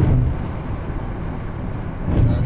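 Steady road and engine noise of a moving car, heard from inside the cabin, with a brief swell in level just at the start.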